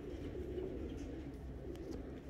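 Domestic high-flyer pigeon cocks cooing: a low, continuous coo, with a few faint clicks.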